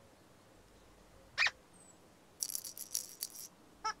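Children's-show sound effects: a single short chirp about a second and a half in, then a quick shaker-like rattle of several strokes, and a short pitched toot just before the end.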